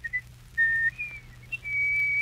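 A person whistling a tune in short, separate notes, some held briefly and some sliding in pitch, with short gaps between them.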